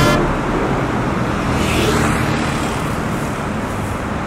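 Road traffic: a car and a motorcycle moving along the road, a steady traffic noise.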